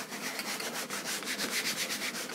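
Chalk writing being wiped off a blackboard, rubbed quickly back and forth in even, rasping strokes.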